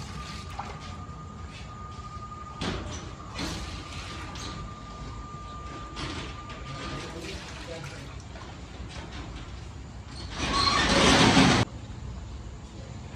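A metal ladle scooping thin, oily paye broth from one large aluminium pot and pouring it into another, with a few knocks of the ladle against the pot. Near the end comes a loud splashing pour of broth into the pot, which stops abruptly.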